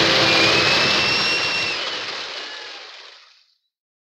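An orchestra's last held note stops just after the start, leaving studio-audience applause on an old radio broadcast recording. The applause fades out to silence about three and a half seconds in.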